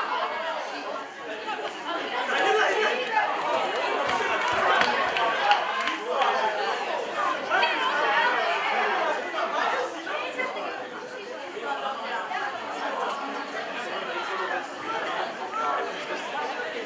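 Several people talking over one another in indistinct chatter, spectators close to the camera at a rugby league match, with a short sharp knock about five seconds in.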